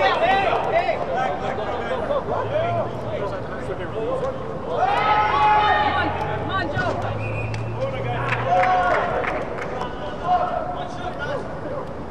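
Calls and chatter of players and spectators during an indoor soccer game, with one loud call about five seconds in. A low steady hum runs through the middle.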